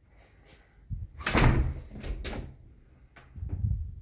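Household doors being handled: a heavy thud and knocks about a second in, then another knock and rattle near the end as a closet door is opened.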